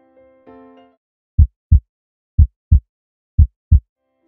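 A soft electric-piano chime dies away, then three pairs of deep, loud thumps about a second apart beat like a heartbeat: a channel's logo sting.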